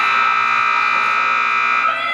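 An arena horn sounds one long, loud, steady tone that stops shortly before the end. It plausibly marks the end of a team penning run.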